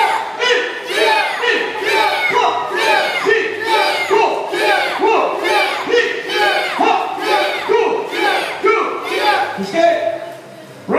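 A karate group of adults and children shouting in unison with each punch from horse stance: a fast, even run of short shouts, about two or three a second, each falling in pitch.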